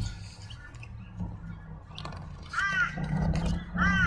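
A bird calling twice outdoors, two short calls that rise and fall, about two and a half and four seconds in, over a low rumble of wind on the microphone.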